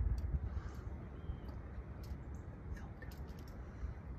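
Low, steady outdoor rumble with a few faint soft clicks; no clear single source stands out.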